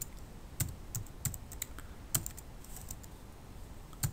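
Typing on a computer keyboard: a series of separate, irregularly spaced keystrokes, most of them in the first two and a half seconds.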